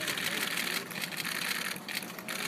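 Many camera shutters firing in rapid continuous bursts at once, a dense fast clicking that briefly drops off near the end.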